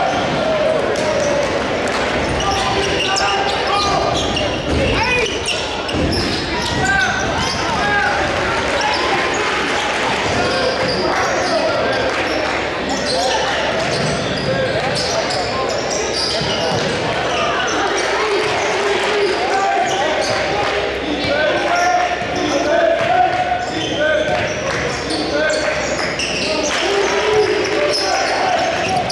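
Basketball being dribbled on a hardwood gym floor during a live game, with players' and spectators' voices echoing in the large gym throughout.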